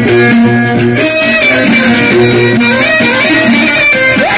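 Loud, continuous live band music played through loudspeakers: a plucked string instrument and a bowed string carry a melody over held notes.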